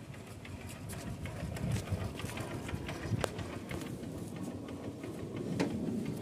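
Motorcycle engine idling steadily, with a sharp click a little after the middle.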